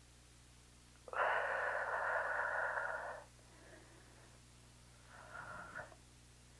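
A person breathing out hard through the mouth, a long exhale lasting about two seconds, then a shorter, softer breath near the end, with the steady effort of an endurance exercise.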